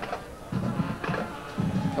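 Band music with drum beats, from a school band playing in the stadium.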